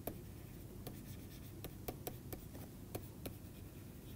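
Stylus writing on a tablet: faint, irregular taps and light scratches as handwritten words are put down.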